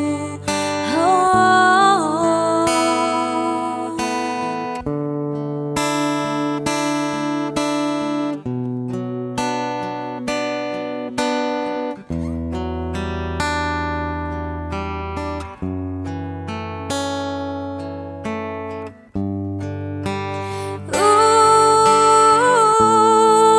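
Acoustic guitar played as an instrumental passage, with ringing picked notes and chords changing about every second. A woman's voice holds a wavering sung phrase in the first few seconds and comes back in near the end.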